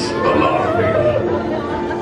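Crowd chatter: many people talking at once in a large room.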